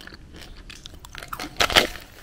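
Hard candy-coated chocolate being bitten and crunched: a run of small crisp crackles, with a louder burst of crunching near the end.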